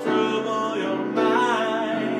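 A man singing over a grand piano. A held sung note wavers about halfway through.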